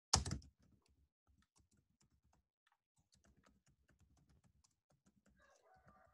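Typing on a computer keyboard: quick, faint key clicks running on, after one louder knock right at the start.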